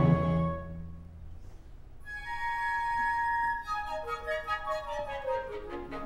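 Opera orchestra: a soprano's held note and the chord under it fade out in the first second. High instruments then hold long steady notes, followed by a falling run of short notes.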